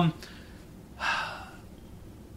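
A podcast host's short, audible breath into the microphone about a second in, just after a trailing "um", over quiet room tone.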